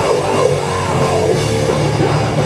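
Metallic hardcore band playing live: distorted electric guitar, bass and drum kit at steady full volume.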